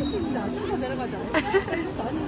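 Indistinct chatter of several voices, with a short click about one and a half seconds in.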